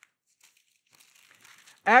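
Faint rustle of thin Bible pages being turned, starting about a second in, before a man's voice begins near the end.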